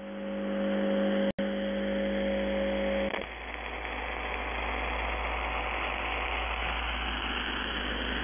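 Shortwave AM reception of the UVB-76 'Buzzer' station on 4625 kHz. A steady hum with several overtones has a brief dropout about a second in and cuts off about three seconds in, leaving only radio static and hiss.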